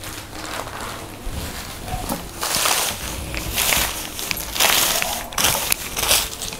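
Sarees being handled by hand, the cloth rustling in several short bursts, the loudest in the second half.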